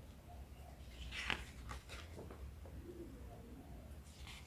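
Paper pages of a picture book being handled and turned, with one louder rustle a little over a second in and lighter rustles after it.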